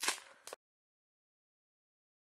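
Foil wrapper of a Pokémon Hidden Fates booster pack crinkling as it is torn and pulled open. The sound cuts off suddenly about half a second in, leaving dead silence.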